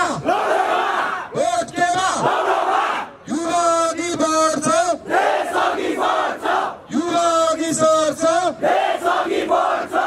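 A man chanting slogans into a handheld microphone, with a crowd joining in: about six short shouted phrases, several ending on a long held note.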